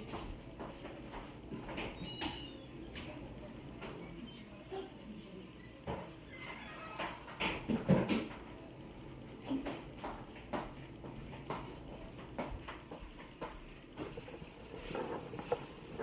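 A dog barking faintly at a distance, with scattered knocks and thuds.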